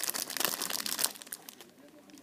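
Clear plastic bags crinkling as squishy toys sealed inside them are handled; the rustling dies down after about a second and a half.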